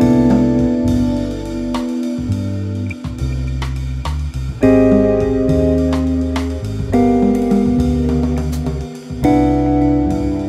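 Archtop jazz guitar playing extended chord voicings (major-seventh chords with added 9ths, 13ths and sharp 11ths) through a jazz tune. The chords ring and are held, with new ones struck about halfway through, near seven seconds and near the end, over a moving bass line and light drums.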